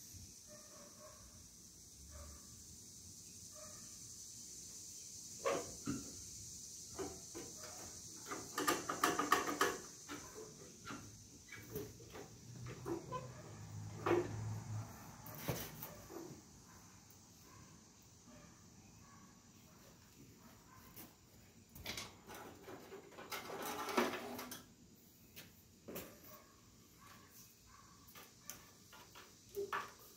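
Hand tools working on a garden tractor's steel frame: scattered metal clicks and clanks, with two denser runs of rapid clicking about nine and twenty-four seconds in.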